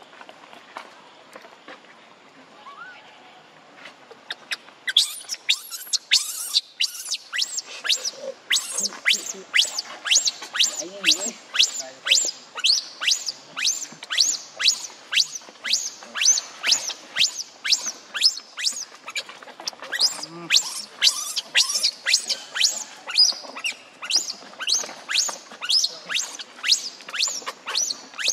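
A newborn macaque crying in distress: after a quiet start, a rapid, unbroken series of shrill, high-pitched screams, each falling in pitch, about two a second, begins about five seconds in.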